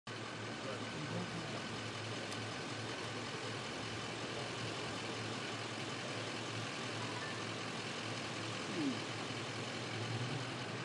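Car engines idling: a steady low hum under a faint murmur of voices.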